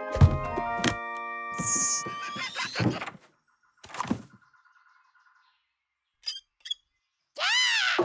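Cartoon music score with slapstick sound effects: a thud just after the start over held musical notes, another thud about four seconds in followed by a buzzing tone, two short clicks, and a whistle-like glide that rises and falls near the end.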